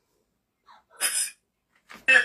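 A person's single short, sharp burst of breath about a second in, after a faint lead-in sound.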